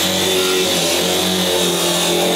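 Cordless angle grinder cutting through steel flat bar: a loud, steady grinding hiss.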